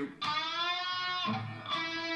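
Electric guitar note on the G string's 7th fret bent upward and pushed past the full-tone target, sounding sharp: an overbend. A second note is picked about a second and a quarter in.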